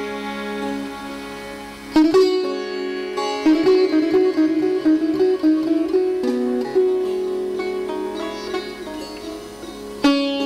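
Sitar playing a slow melodic phrase: ringing notes fade over the first two seconds, then a sharply plucked note about two seconds in opens a line of plucked notes with gliding pitch bends.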